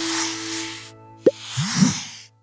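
Closing logo sting: a held musical chord with a high hissy swoosh fades out, then a sharp pop a little past the middle and a short hissing swoop with sliding pitch near the end.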